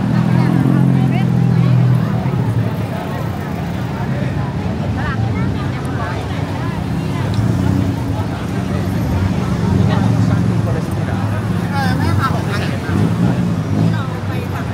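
Busy street sound: many people talking at once over motor traffic. The low engine hum of passing vehicles is strongest in the first two seconds and again about halfway through, as a tuk-tuk goes by close.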